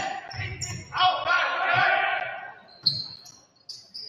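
Indoor volleyball rally: players' voices calling out, a sharp hit of the ball about three seconds in, and short sneaker squeaks on the hardwood gym floor near the end.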